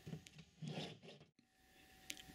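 Near silence, broken by one brief faint scrape about half a second in, then dead silence.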